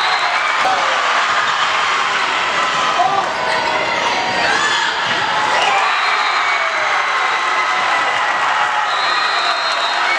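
Crowd in a gymnasium cheering and shouting, many voices overlapping, echoing in the hall.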